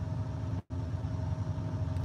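Steady low engine hum heard inside a truck cab, as from the truck's engine running at idle, broken by a split-second dropout in the audio about two-thirds of a second in.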